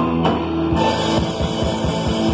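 Live rock band playing an instrumental passage on electric guitar and drum kit. A held chord gives way, under a second in, to rapid drum strokes over sustained notes.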